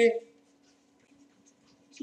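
A man's voice trails off at the start, then near silence with a faint steady low hum and a few faint ticks of a stylus writing on a pen tablet.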